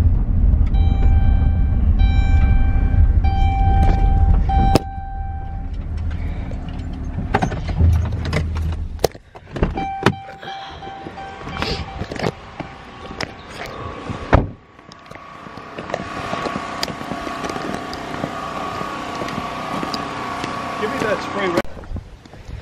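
Van cabin rumble from the engine and road for the first five seconds, with a few steady ringing tones over it, then stopping abruptly. After that come scattered knocks and handling noise, and a steady hiss over the last several seconds.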